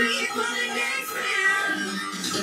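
Live pop music from a concert stage: a woman's voice singing high, sliding notes over the band.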